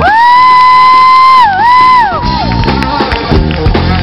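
A single high voice holding a long, loud note, scooping up into it, dipping once about a second and a half in, then falling away after about two seconds while the band drops out beneath it; the band comes back in for the rest.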